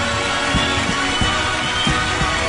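Folk band music with a steady drum beat, about three beats a second, and a melody running above it.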